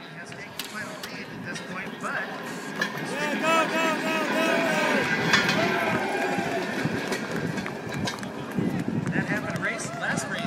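Human-powered racing handcar rolling past on steel rails, its wheels rumbling and clattering louder as it comes close about five to six seconds in, with a sharp clack near the loudest point. Voices from people shouting and calling out run over it.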